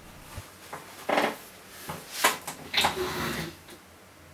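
A few short knocks and rattles of things being handled at a desk close to the microphone, the loudest a sharp knock a little over two seconds in.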